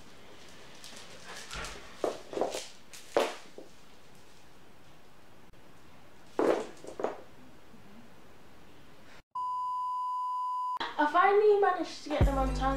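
A few brief soft rustling noises, then a steady electronic beep lasting about a second and a half that starts and stops abruptly, followed by a voice near the end.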